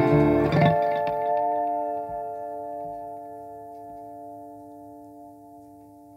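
The song's last guitar chord: a strum just after the start, then the chord rings on and fades away steadily over several seconds.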